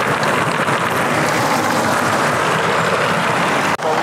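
Road traffic noise: a car passing close by with steady, loud tyre noise on the road surface. The noise cuts off abruptly near the end.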